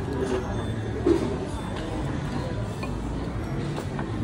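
Cafe room sound: a steady low hum under faint background chatter and music, with a light clink about a second in.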